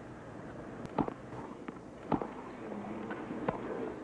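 Tennis ball struck back and forth in a rally: sharp racket hits roughly every second or so, over a low crowd hum.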